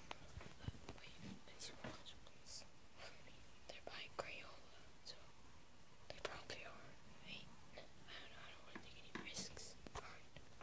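A person whispering quietly, with scattered light clicks throughout.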